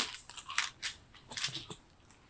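A few faint, irregular clicks and short ticks, with a sharper click at the start.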